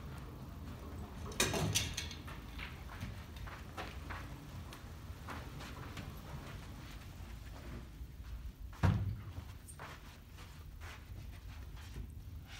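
Grand piano on a wheeled dolly being pushed across carpet: a steady low rolling rumble with scattered clicks and knocks from the piano and dolly. There is a loud knock about a second and a half in and a louder one near nine seconds in.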